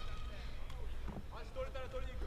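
Faint, distant voices shouting from ringside over the low background noise of the fight hall, typical of cornermen calling instructions to a grounded fighter.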